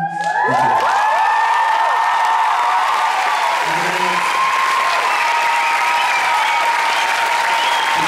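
Audience applauding and cheering as a song ends. Many high-pitched voices rise in pitch in the first second or two, then hold long cheers over the steady clapping.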